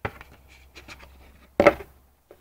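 A cardboard toy package being turned over in the hands: a sharp click at the start, then faint rubbing and light taps of the card.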